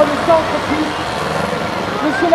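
Engines of a field of small hatchback stock cars running together on a dirt track, with a PA announcer's voice over them.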